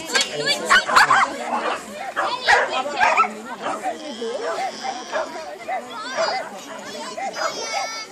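Voices at a dog agility run: a handler calling out short commands to her running dog, with spectators chattering and a dog barking now and then. The calls are loudest in the first three seconds and quieter after.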